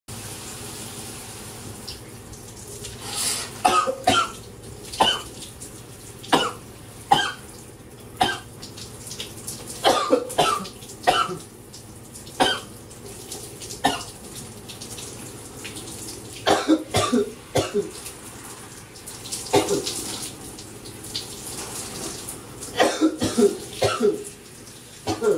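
A man coughing in repeated fits, sharp coughs coming in clusters of two to four, starting about three seconds in, over the steady hiss of a running shower. The coughing comes from a throat bug that will not let up.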